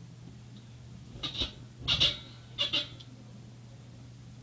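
Bedsprings squeaking with soft thumps as someone bounces on a bed: three short squeaks about two-thirds of a second apart, the middle one loudest.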